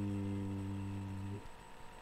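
A man's voice holding one drawn-out hesitation sound ('uhhh' or 'mmm') at a steady pitch for about a second and a half, then stopping, leaving faint room tone with a thin steady tone.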